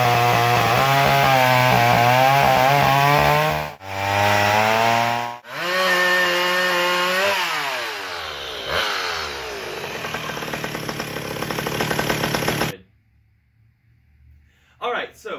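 Two-stroke gas chainsaws, a yellow McCulloch among them, running at high revs and cutting through log rounds in a string of short clips. The engine note wavers and dips as the chain bites, falls off about seven seconds in, and cuts off suddenly near the end.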